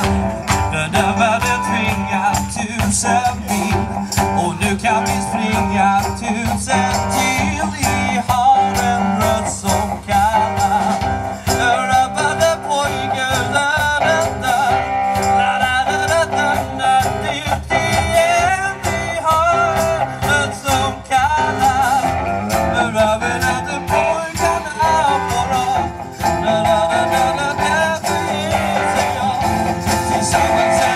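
A live rock band playing: electric guitars, bass guitar and a drum kit keeping a steady beat.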